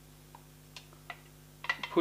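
Light clicks and taps of gel blaster parts being handled on a bench: a few single clicks, then a quick cluster of them near the end.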